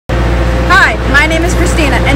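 A woman speaking, starting under a second in, over a steady low mechanical hum.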